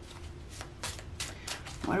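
Tarot cards being shuffled by hand: a run of short, irregular flicks. A woman's voice starts speaking at the very end.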